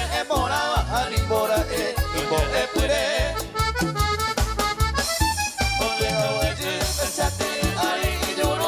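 A live band playing a Paraguayan polka: singers over guitar, keyboard and drums, with a steady beat.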